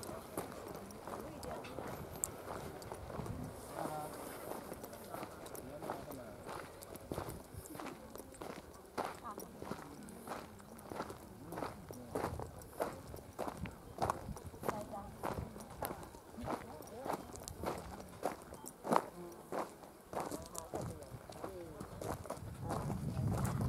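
Footsteps walking at a steady pace on a gravel path, about two steps a second, most distinct in the second half. Faint voices sound in the background.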